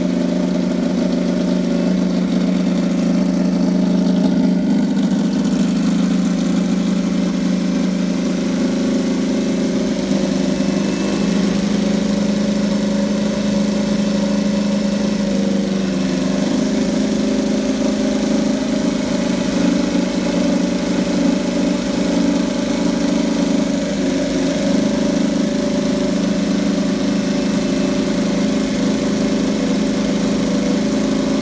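Ducati Panigale V4 R race superbike's V4 engine idling steadily, with no revving.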